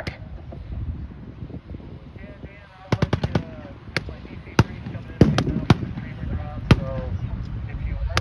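Battlefield small-arms fire starting about three seconds in: a quick burst of several cracks, then scattered single shots every half second or so, over a steady low rumble from the armored vehicles.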